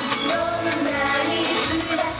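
Upbeat Japanese idol-pop song, with a group of girls singing over a backing track played through a stage PA.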